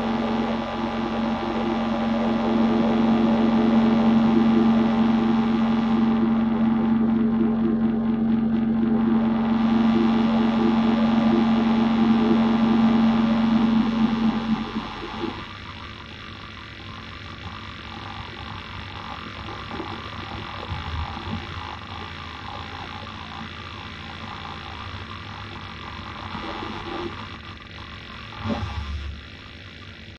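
Live electronic noise drone from electronics patched through a small mixer: a loud, dense hum with a strong steady low tone and many stacked tones above it. About halfway through it drops away sharply to a quieter, sparser, flickering texture, with a brief low thump near the end.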